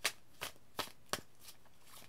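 Tarot deck shuffled by hand: a few short, sharp card snaps, about three a second.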